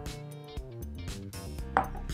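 Background music, and near the end a single sharp clink as a glass whisky glass is set down on a wooden tabletop.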